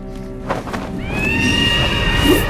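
A large bird's long, high cry, a cartoon sound effect, starting about a second in with a short rise and then held steady, over background music.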